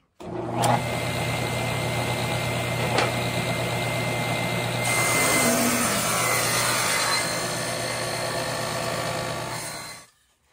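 Table saw running and cutting through a wooden frame blank fed along the fence, a shallow stair-step cut with the blade at about 5/16 inch. It starts suddenly, gets a little louder and brighter about halfway through the cut, and cuts off suddenly near the end.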